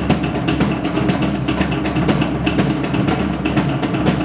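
Fast, steady Polynesian dance drumming: a dense, even run of rapid drum strokes.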